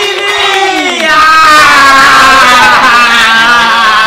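Two or more people yelling together in one long, loud, drawn-out shout, with several voices overlapping; one voice slides down in pitch about half a second in, and the shout holds steady to near the end.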